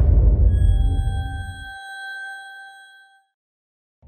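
Logo sting sound effect: a deep rumbling hit with a rising hiss dies away about two seconds in, under a bright ringing chime of several pure tones that fades out a little after three seconds.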